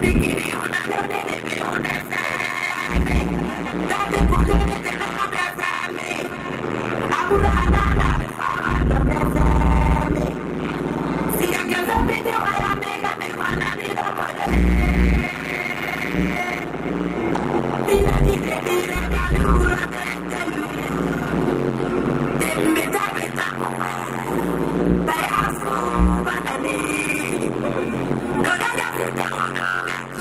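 Live band music from the concert stage, played loud through the PA, with heavy, irregular bass hits under a continuous keyboard-led backing.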